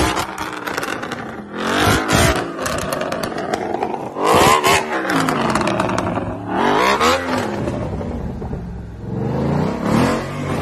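Ford Mustang GT's V8 revved in short blips about every two and a half seconds, the engine note rising and falling each time, the one about halfway through the loudest.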